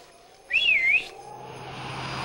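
A short wavering whistle about half a second in that rises, dips and rises again in pitch, followed by a faint slowly rising tone and a low hum.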